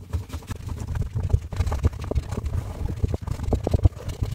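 A towel rag wet with isopropyl alcohol scrubbed rapidly back and forth over a fingertip by a gloved hand: continuous irregular rubbing and scuffing, working an ink stain off the skin.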